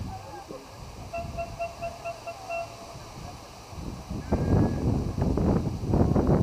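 Softball players' voices calling and shouting across the field, getting loud about four seconds in. Earlier there is a short run of quick, evenly repeated high chirps lasting about a second and a half.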